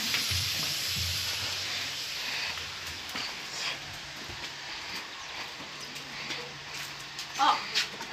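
Sausage frying in a pan, its hiss fading over the first two seconds or so, then scattered footsteps of people walking in flip-flops over concrete and gravel.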